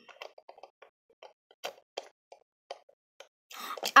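A string of soft, short mouth pops and lip smacks, irregularly spaced, about a dozen in all; a voice starts near the end.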